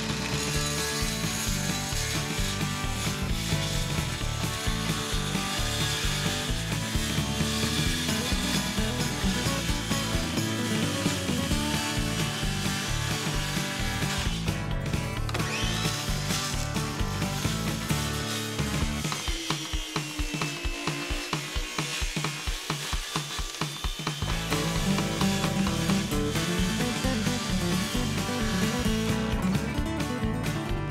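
Circular saw cutting through a sheet of plywood, under background music with a steady beat.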